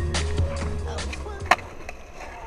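Skateboard rolling over concrete, with one sharp clack from the board about one and a half seconds in, as the background music fades out.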